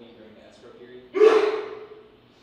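A loud, breathy intake or puff of breath close to a handheld microphone, starting suddenly a little over a second in and fading away over about half a second.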